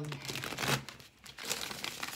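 A deck of tarot cards being shuffled by hand: rapid papery flicking and slapping of cards, with a brief pause a little over a second in.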